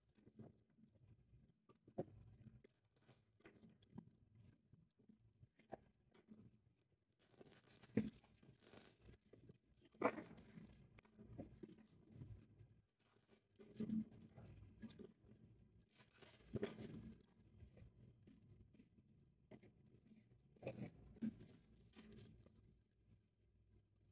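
Faint hand-shuffling of a tarot card deck: brief papery swishes and soft taps of the cards, a few seconds apart.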